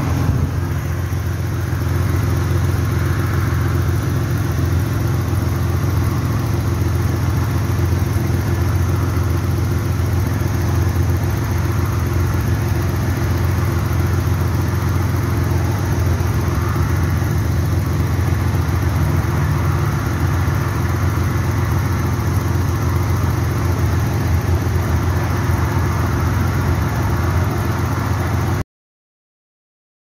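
Nissan RB20E straight-six engine idling steadily, a deep, even hum with no revving.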